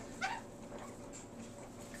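A newborn Old English Sheepdog puppy gives one brief, high, rising squeak near the start while being rubbed dry with a towel.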